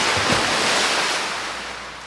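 A sound effect laid over the animation: a sudden rush of noise that holds for about a second, then fades away and is cut off.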